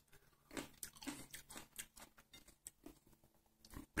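Faint chewing of a small wild currant tomato (Solanum pimpinellifolium), heard as a few soft wet squishes and clicks scattered through; the fruit's skin is tough for its size.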